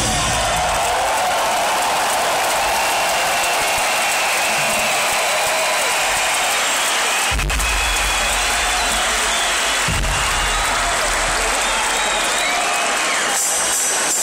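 Large arena crowd cheering and applauding as a rock song ends, with some whistling and two low booms from the stage about three seconds apart, recorded on a phone.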